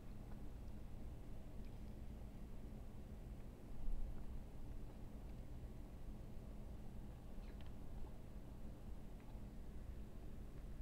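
Quiet room with a steady low hum and faint mouth sounds of a person chewing a bite of burger, with a soft bump about four seconds in.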